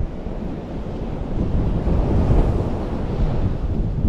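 Small waves breaking on a sandy beach, with wind buffeting the microphone; the wash swells a little around the middle.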